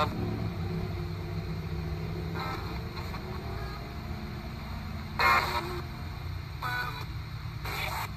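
RadioShack 12-587 radio sweeping the FM band as a ghost box: hiss with short snatches of broadcast sound cutting in a few times, loudest about five seconds in. A steady low rumble runs underneath.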